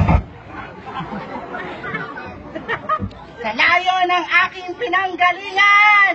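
Electronic dance music cuts off abruptly just after the start, leaving crowd chatter. From about three and a half seconds in, a loud voice calls out or speaks in drawn-out, rising and falling phrases over the crowd.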